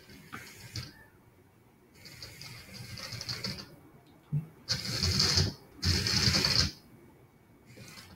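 Moorebot Scout robot's small geared drive motors and mecanum wheels whirring as it drives and turns on a wooden desk. The whirring comes in three bursts: a longer one about two seconds in, then two shorter, louder ones past the middle.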